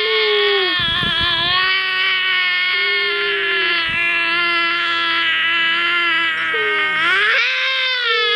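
A young boy's long, loud wail, held almost unbroken for about seven seconds at a steady high pitch. A second, rising wail starts near the end.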